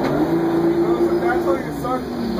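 Crown Supercoach Series 2 bus engine pulling the moving bus. Its drone rises in pitch at the start, holds steady, then drops near the end.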